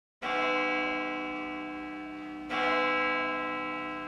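A church bell struck twice, about two seconds apart; each stroke rings on and slowly fades.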